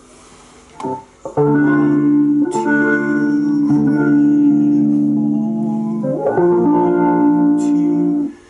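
Guitar chords played through a DigiTech Talker vocoder pedal: a long sustained chord from about a second and a half in, then a second chord a little after six seconds, each held steady.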